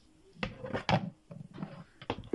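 Plastic action figures knocking against each other and a hard surface as they are handled: two sharper clacks about half a second and a second in, then a run of smaller taps.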